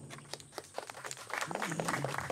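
Light rustling and scattered small clicks of handling noise, typical of a handheld microphone and sheets of paper being handled, with a brief faint voice about halfway through.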